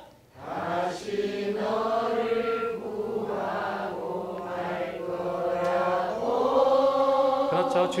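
Voices singing a slow Korean ballad melody in long, sustained notes that glide gently between pitches.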